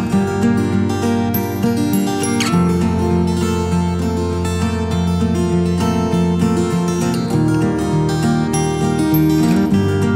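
Background music led by acoustic guitar, with strummed and plucked notes and a steady low bass.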